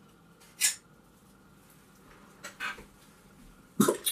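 Handling noise from unpacking a guitar kit's bridge and pickup: a few short rustles of packaging, with a louder knock just before the end.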